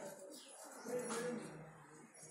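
A bird calling: a low pitched call about a second in, with fainter high chirps around it.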